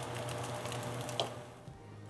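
Pan-fried dumplings (potstickers) sizzling in oil in a nonstick pan, the water cooked off and their bottoms browning; the sizzle fades and cuts off near the end. A faint low steady hum runs beneath.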